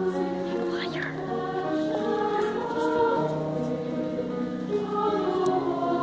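High school varsity choir singing slow, sustained chords, the voices holding each note and moving to a new chord every second or so.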